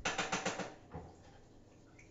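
Kitchen clatter: a quick run of sharp clicking knocks, about ten a second, stopping well before a second in, with one more knock just after it.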